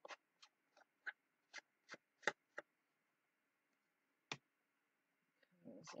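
Faint, quick dabs of a black ink pad against the edges of a paper tag, about eight soft taps in the first two and a half seconds, then a pause and one more a little past four seconds.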